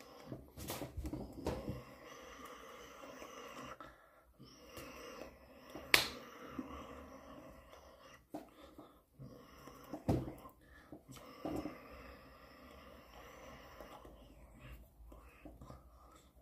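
A man speaking to the camera in a small room, with a sharp click about six seconds in and a smaller one about ten seconds in.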